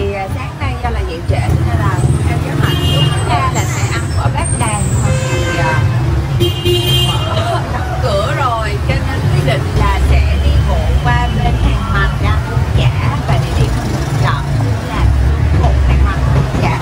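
Busy street traffic with motorbikes running past and a steady low rumble, with a couple of short horn toots about three and seven seconds in. A woman's voice talks over it.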